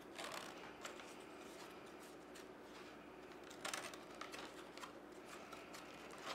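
Faint rustling and scraping of flat reed weavers being drawn in and out between the reed spokes of a woven basket, with a few brief scratchy strokes, the clearest just after the start and about three and a half seconds in.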